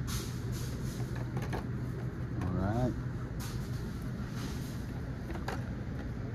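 Light clicks and rustles of carded Hot Wheels packages being handled on a plastic spinner rack, over a steady low hum of store ambience, with a brief murmured voice a little before the middle.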